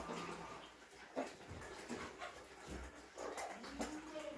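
Faint domestic animal sounds with a few light knocks, and a short whine-like call near the end.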